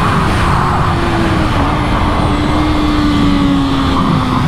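2018 Kawasaki ZX-6R's inline-four engine running on track, its pitch falling slowly and steadily, over a dense rush of wind noise.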